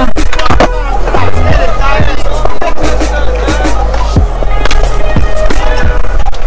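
Skateboards on a concrete skatepark bowl: repeated sharp clacks and knocks of boards popping, landing and hitting the coping, over loud music with a heavy bass line and a voice.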